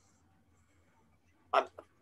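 Near silence in a pause of a man's speech, then he says a short word ("I'm") near the end.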